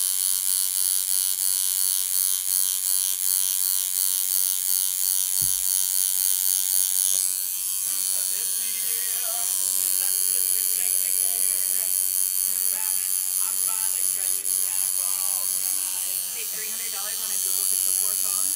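Electric tattoo machine buzzing steadily while tattooing skin on the head; its tone changes about seven seconds in.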